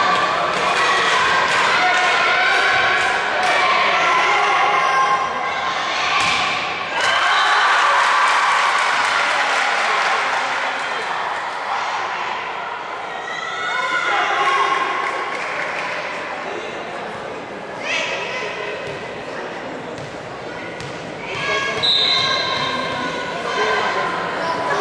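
Volleyball being played in an echoing sports hall: high girls' voices calling and shouting throughout, with sharp thuds of the ball being struck or hitting the floor a few times, the clearest about a quarter of the way in and again near the end.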